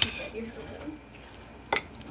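Table knife and fork cutting through a chili cheese dog on a ceramic plate, with one sharp clink of metal against the plate near the end.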